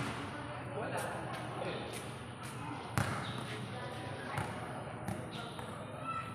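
Basketball bouncing on a concrete court: several separate, unevenly spaced bounces, the loudest about halfway through, with faint voices in the background.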